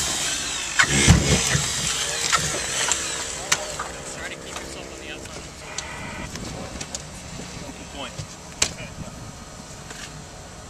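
Tempered glass of a car's rear side window breaking up and being cleared, a loud crunch with a low thump about a second in, then scattered clinks of glass pieces falling. A steady hum runs for about two seconds midway.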